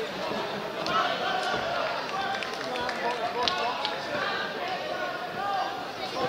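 Hubbub of many people talking and calling out at once in a large sports hall, with a few sharp knocks among the voices.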